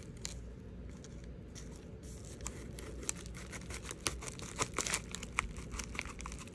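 Scissors cutting open a padded bubble mailer, with quick snips and crinkling of the envelope that are sparse at first and come thick from about halfway in.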